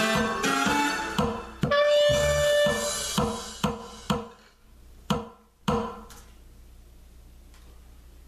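Clarinet playing over a recorded accompaniment with percussion, ending a piece. The clarinet stops about four seconds in, a few last separate strikes ring out about five and six seconds in, and then only a low room hum is left.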